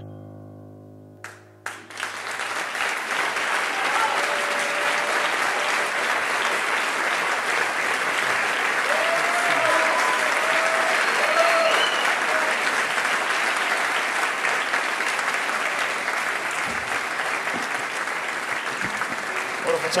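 A sustained keyboard chord fades away in the first second. About two seconds in, a concert audience breaks into steady applause that lasts the rest of the time, with a few voices calling out from the crowd partway through.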